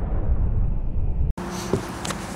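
Deep rumble of a large explosion, its high end dying away, cut off abruptly about a second and a half in. Quieter outdoor background noise with a low hum follows.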